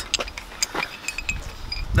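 A few light metallic clicks and taps as steel weld-on barrel hinges are picked up and handled.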